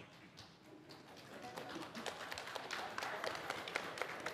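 Many children's footsteps and shuffling as a group walks off together, a quick patter of taps over a rising murmur of rustling and low voices.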